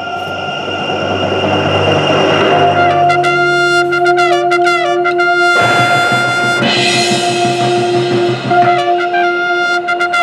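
Marching band brass and winds playing: a held chord grows louder over the first few seconds, then moving melody lines play over sustained low notes. About five and a half seconds in, the full band swells to a loud, bright passage.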